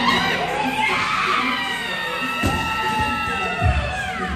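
Excited yelling and cheering, high and drawn out, over background music. A barbell loaded with rubber bumper plates, 335 lb, is dropped to the gym floor, landing with a low thud about two and a half seconds in and thumping again near the end.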